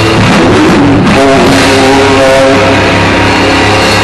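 Live heavy rock band playing loud: electric guitars and drum kit.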